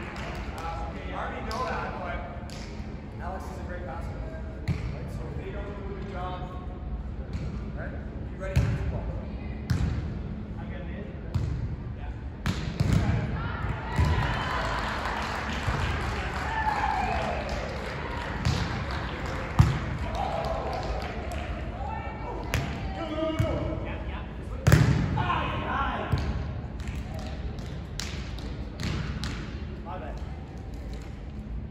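Volleyball being struck by hands and forearms during a beach volleyball practice rally: sharp slaps every few seconds, the loudest about two-thirds of the way through, under background voices.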